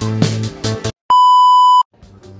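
Music with a beat stops about a second in. After a brief silence comes a single steady electronic beep, a pure tone lasting under a second that cuts off suddenly, like an edited-in sound effect.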